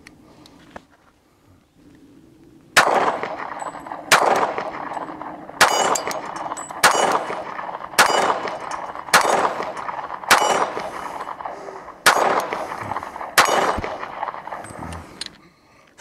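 Semi-automatic pistol fired nine times at a steady pace, about one shot every second and a quarter with one slightly longer pause, starting about three seconds in; each sharp report trails off over about a second.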